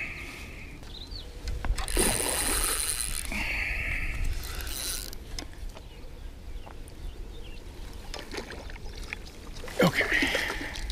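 Spinning reel being cranked in short spells as a hooked carp is played in to the bank, then water splashing as the fish goes into the landing net near the end.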